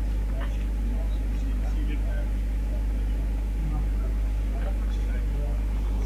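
A steady low rumbling hum runs throughout, with faint voices of people chatting in the background.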